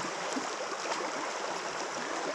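Shallow river flowing over stones: a steady rush of water.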